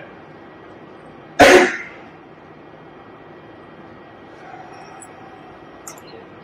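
A single short cough about a second and a half in, over steady room tone.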